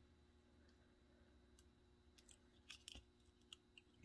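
Near silence. In the second half come faint, scattered small ticks and clicks of a paper piercer and a sticker sheet being worked as a sticker is peeled.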